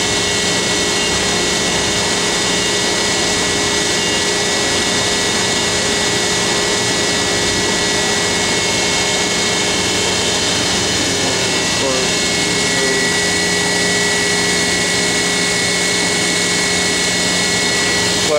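Steady drone of running industrial machinery: an even roar that holds the same level throughout, with a few steady hum tones over it.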